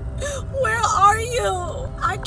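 A young woman's exaggerated mock crying: a wavering, whimpering wail without words, over the low rumble of a moving car's cabin.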